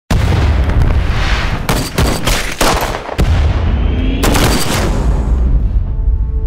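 Battle sound effects over a music score: a heavy low rumble with several sharp explosion and gunfire blasts, bunched between about one and a half and four and a half seconds in.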